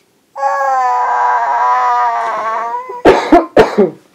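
A toddler's voice holding one long, high, sung-out note that dips a little at its end, then four short, loud coughs near the end.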